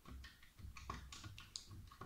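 Fingers pressing the plastic keys of an electronic desk calculator, a series of faint separate clicks as numbers and the multiply sign are entered.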